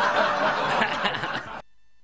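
Several people laughing together at a joke, cut off suddenly about one and a half seconds in.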